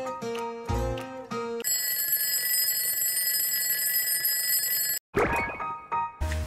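Light plucked background music, then about a second and a half in an alarm starts ringing steadily for about three seconds, signalling wake-up time, and cuts off suddenly. Near the end a sudden loud sound comes in and the music resumes.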